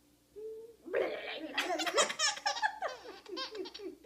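A baby laughing: a short vocal sound, then from about a second in a run of rapid, high-pitched belly laughs and giggles that thin out near the end.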